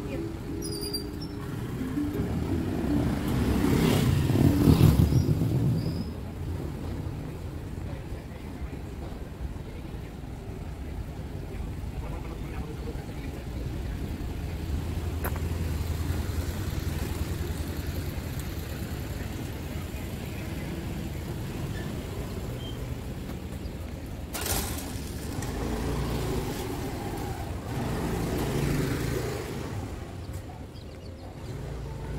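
Street ambience: a motor vehicle passes, loudest about four to five seconds in, over a steady low rumble with voices in the background.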